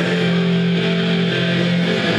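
Live rock band music with electric guitar ringing out held chords, no vocal line.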